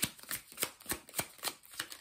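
Deck of tarot cards being shuffled by hand, card striking card in a steady rhythm of about three strokes a second.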